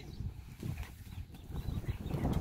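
Zebras calling with short, pitched, bark-like brays, over a steady low rumble.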